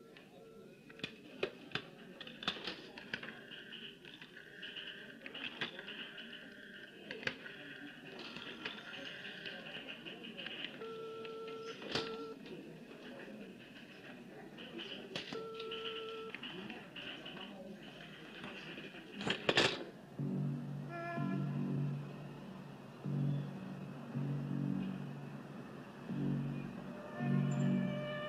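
Busy office room sound with scattered clicks and knocks, and two short electronic beeps a few seconds apart. After a sudden loud swish about two-thirds through, film-score music starts with a low pulsing rhythm.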